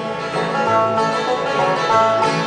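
Bluegrass band playing a short instrumental bar without singing: acoustic guitar strumming with banjo picking over it.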